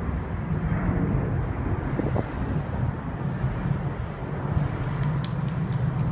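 Steady low rumble of open-air airport ambience, with a few faint clicks near the end.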